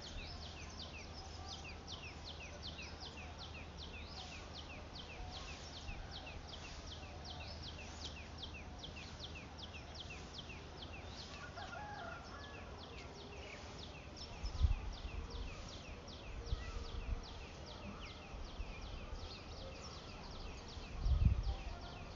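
Birds chirping, a steady run of short, quick falling chirps about three or four a second. Wind buffets the microphone in low rumbles about two-thirds of the way through and again near the end.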